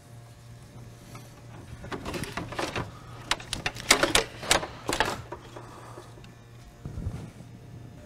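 Stock radiator being worked loose and lifted out of a car's engine bay: a run of sharp knocks, clicks and scrapes as it catches on the surrounding parts, mostly between about two and five seconds in, over a steady low hum.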